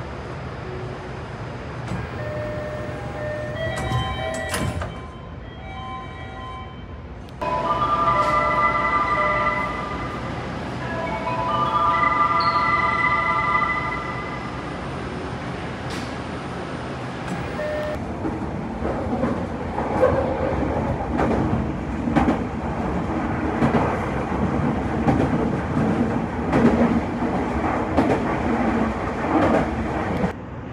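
Toei Mita Line 6500-series train: a short melody of held electronic tones in the first half, with an abrupt jump in loudness partway through, then the train running with repeated clicks of wheels over the rail joints.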